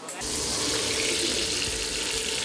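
Beaten egg sizzling in melted butter in a frying pan. It starts suddenly a moment in and then goes on steadily.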